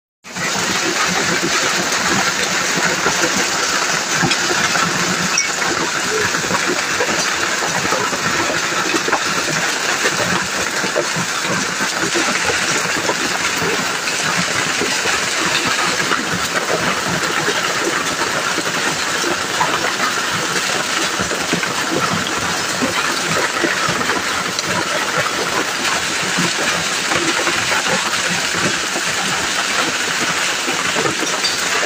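Heavy hailstorm: hailstones pelting the ground and leaves in a dense, continuous patter of countless small impacts.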